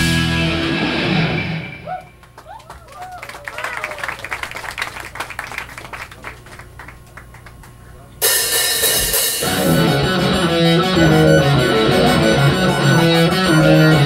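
Live rock band with electric guitars, bass, drums and keyboard playing, then dropping out about two seconds in; for several seconds only crowd clapping and shouts are heard, then the full band comes back in suddenly on a cymbal crash about eight seconds in and plays on.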